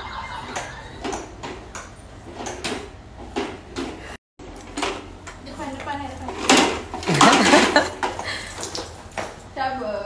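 Repeated knocks and clatter from a child's ride-on toy horse hopping along the floor with a plastic toy car dragged behind it, with a voice heard briefly partway through.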